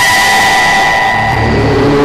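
Broadcast headline transition jingle: a noisy whoosh under a held high synth tone, with low notes coming in about halfway through.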